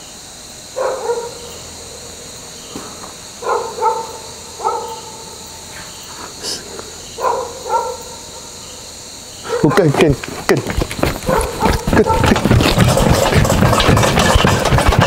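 A dog barking in short calls, about five times a few seconds apart, over a steady high insect drone. About nine and a half seconds in, a loud rumbling noise takes over.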